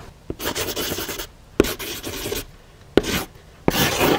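Pen scratching on paper in four quick scribbled strokes, each a short dry rasp with a sharp start.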